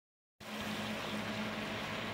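Steady low hum with an even hiss over it, starting about half a second in: kitchen background noise around a pan of vegetables simmering on a gas stove.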